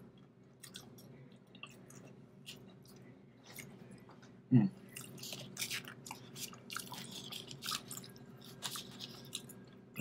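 A person chewing a mouthful of breaded chicken fillet: a run of small irregular clicks, denser in the second half.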